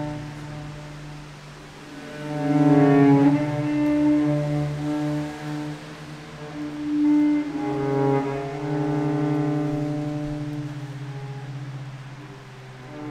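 Solo cello, bowed: long held notes moving slowly over a sustained low note, swelling louder about two seconds in and again around seven to eight seconds, then easing off near the end.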